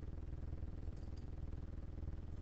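Low steady hum with a fluttering rumble under it: the background noise of a desk recording setup, with no speech.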